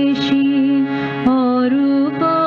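Solo voice singing a slow Indian devotional song, with a wavering vibrato on held notes, over steady sustained harmonium notes; the voice moves to a new note about a second and a quarter in.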